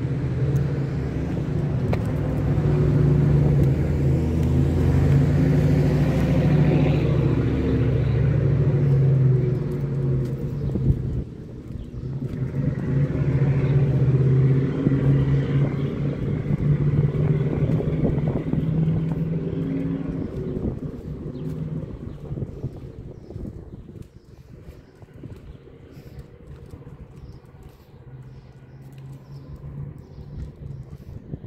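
A motor vehicle engine running with a steady low hum that dips briefly about a third of the way in, returns, then fades away over the last several seconds.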